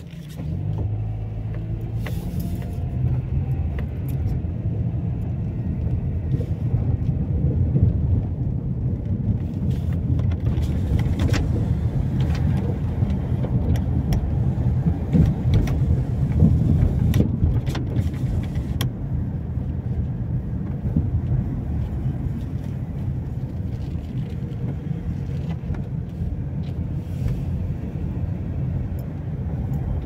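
A car driving slowly, heard from inside the cabin: a steady deep hum of engine and road noise, with a few faint clicks.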